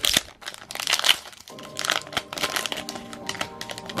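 Foil booster-pack wrapper crinkling and crackling in quick irregular bursts as it is torn open by hand.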